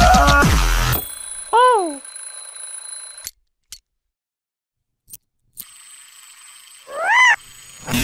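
Music cuts off about a second in. Then come two pitched cartoon swoop sound effects: a falling one shortly after, and a rising-then-falling one near the end. A faint high steady whine lies behind them, and there is a silent gap in the middle broken by a couple of clicks.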